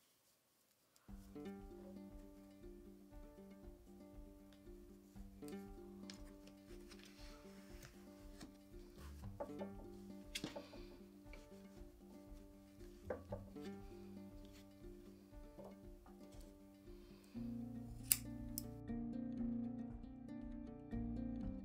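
Soft background music with plucked strings, starting about a second in and getting louder near the end. A few faint clicks sound over it.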